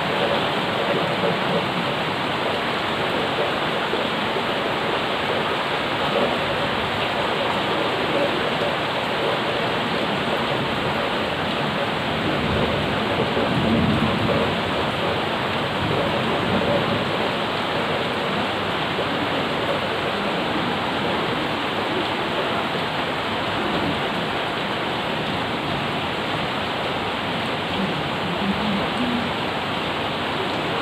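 Steady rain falling on paving, puddles and potted plants, a dense, even hiss. A brief low rumble swells about halfway through.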